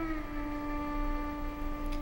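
Film score: a violin holds one long steady note that drops a little in pitch just after the start.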